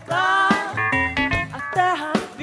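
Live band music with a woman's lead vocal, sung notes with a wavering pitch, over the band's instruments.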